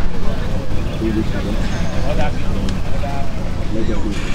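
Open-air football pitch sound: distant calls from players heard over a steady low hum and rumble, with a few faint knocks.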